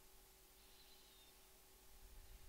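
Near silence: faint room tone with a steady low hiss and hum.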